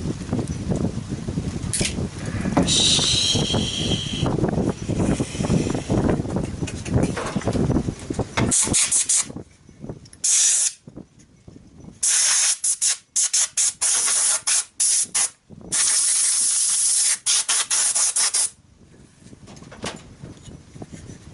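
Handheld compressed-air blow gun hissing in a series of short trigger bursts, some brief and some held for a second or two, over the second half. Before that, a low rumble fills the first half.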